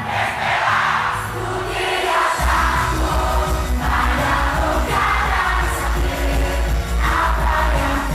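Live idol-pop performance: young women singing into handheld microphones over a loud backing track. About two and a half seconds in, the bass and drum beat come in and carry on under the vocals.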